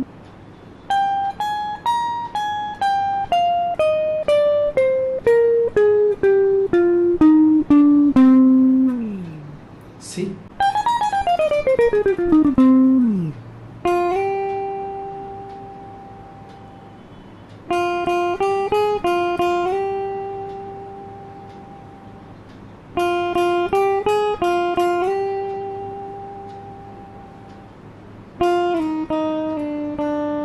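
Electric guitar played slowly note by note: a picked run stepping steadily down in pitch, a quicker run falling down, then short phrases on the B string sliding between the 6th and 8th frets, each left ringing to fade out.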